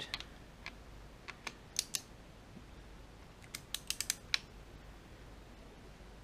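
Socket wrench on the camshaft gear bolts of an LS engine clicking in short runs as the bolts are run down toward the first torque stage of 15. Scattered single clicks come first, then a quick cluster of about six clicks near the middle.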